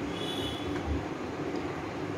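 Soft dull taps of a steel fork pricking rolled papdi dough discs against a board, about twice a second, over a steady background hum.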